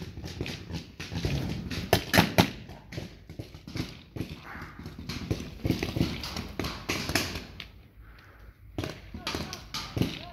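Paintball markers firing in scattered sharp pops, some in quick pairs, with a loud pair about two seconds in and a cluster near the end.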